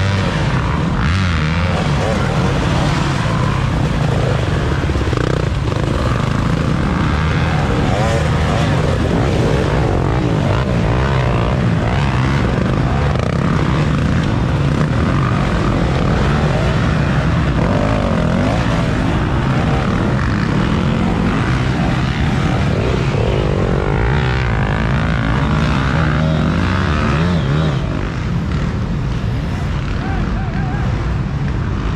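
Several dirt bike engines revving hard and unevenly, pitch rising and falling, as riders fight for traction in deep mud.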